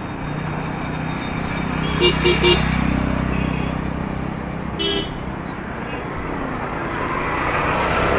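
A vehicle horn giving three quick toots about two seconds in and one more short toot near five seconds, over the steady hum of a motor vehicle running.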